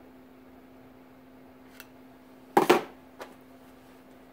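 A screwdriver set down on the metal test stand: one short metallic clatter about two and a half seconds in, with a faint click before and after it, over a steady hum.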